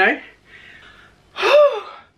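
A woman's voice finishing a word, then faint breathing and, about a second and a half in, a short loud sigh with a pitch that rises and falls.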